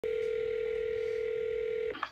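A steady telephone line tone, one held pitch, that cuts off abruptly just before the end: a phone call ringing through before it is answered.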